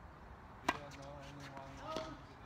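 Tennis serve struck close by: a single sharp pop of racket strings on the ball, under a second in. A smaller knock comes near the end as the ball is played on the far side of the court.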